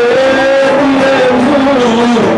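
Live Cretan folk music: a held, gently gliding melody line over plucked-string accompaniment, played loud and continuous.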